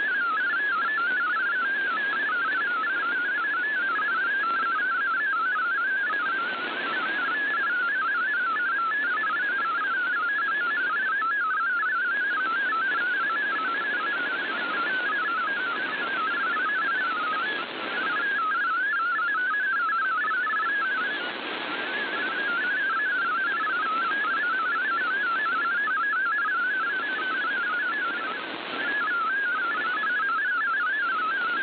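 MFSK32 digital text signal received on shortwave radio: a fast, warbling stream of hopping tones, steady in pitch range, over a hiss of band noise that swells and fades every few seconds.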